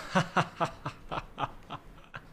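A man laughing: a run of short breathy laugh pulses, about four a second, fading away.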